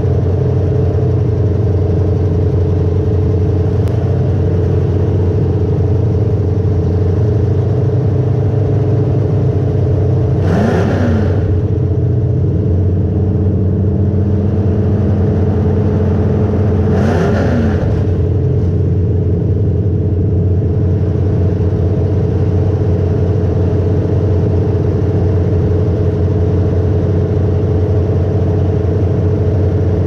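Demolition derby car's engine running steadily, heard loud from inside its gutted cabin. It rises briefly in pitch twice, about ten and seventeen seconds in, each time with a short burst of hiss.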